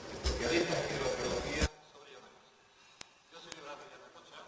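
Indistinct speech in a room, muddied by low-pitched noise, that cuts off abruptly before halfway. It is followed by a faint murmur and two soft clicks.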